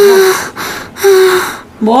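A woman's voice giving two short, breathy cries, each falling slightly in pitch: one at the start and one about a second in. A man's voice comes in just before the end.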